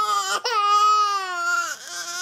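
A toddler crying: a short wail that breaks off, then a long, drawn-out wail lasting over a second that trails away.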